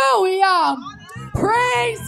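A woman singing a worship phrase into a microphone, long held notes that bend and slide in pitch, in two phrases. Low steady tones come in under the voice about halfway through.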